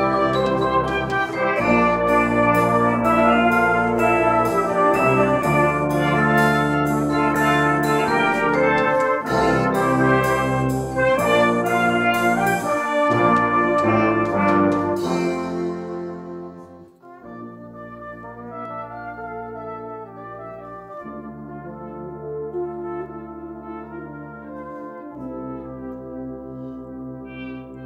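A full brass band (cornets, flugelhorn, euphonium, baritones, tubas) playing loudly, with sharp mallet-percussion strikes over the top. It dies away about 16 seconds in. A softer, slower brass passage with long held notes follows.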